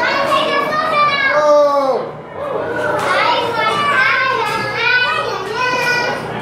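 Young children's high-pitched voices, shouting and squealing in play, with long falling and rising swoops in pitch.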